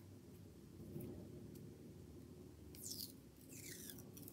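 Faint handling sounds of fingernails picking at a small roll of washi tape, trying to lift its stuck end: a few light ticks, then a couple of brief scratchy sounds about three seconds in.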